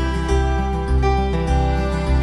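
Background music with a steady bass line, its notes changing about twice a second.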